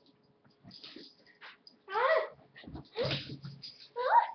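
Dog-like vocal sounds: a short whining cry that bends up and down in pitch about two seconds in, then a rougher bark-like sound about a second later.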